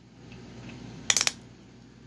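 Metal parts of a prosthetic leg clicking together: a quick run of sharp metallic clicks a little after a second in, amid quiet room tone.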